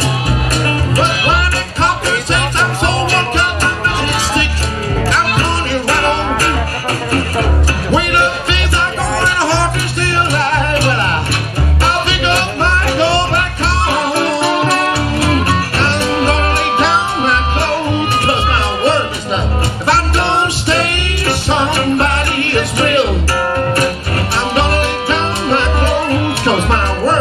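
Live blues band playing an instrumental passage: amplified harmonica leading over plucked upright bass, guitar and washboard. The bass drops out for about a second roughly halfway through, then comes back in.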